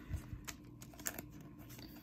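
A trading card being slid into a soft clear plastic penny sleeve: faint crinkles and a few light ticks of the thin plastic under the fingers.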